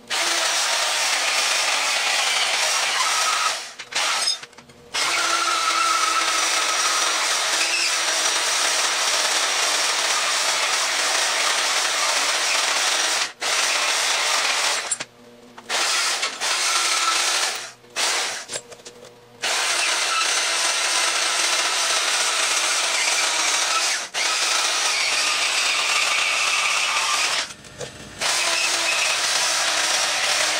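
Portable band saw cutting through steel, running steadily with the blade grinding through the metal, stopping briefly several times before starting again.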